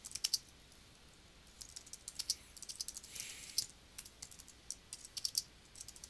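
Computer keyboard being typed on, quick keystrokes in short runs, with a pause of about a second early on.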